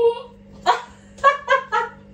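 A dog barking: four short, sharp barks, the last three in quick succession.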